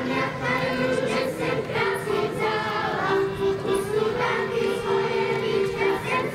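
A group of children singing a folk song together, in long held notes.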